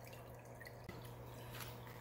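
Faint dripping and trickling of aquarium water, over a low steady hum.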